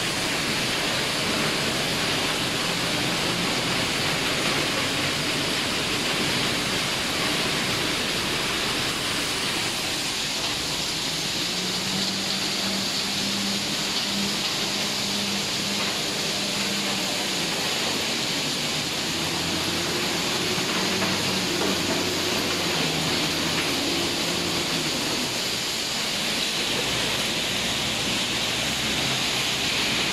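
Steady, loud industrial noise filling a factory hall, with a ChengGong wheel loader's diesel engine running over it. The engine note steps up and down twice in the middle.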